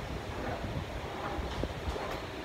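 Steady low rumble of a train pulling into a station, mixed with wind noise on the microphone.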